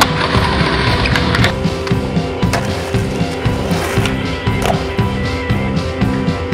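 Skateboard on pavement: a few sharp clacks of the board hitting the ground and wheels rolling, over loud music with a steady beat.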